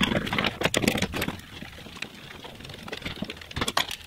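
A socket ratchet clicking in quick runs as it loosens the 12 mm nuts on the intercooler pipe, with a lull in the middle and a few more clicks near the end.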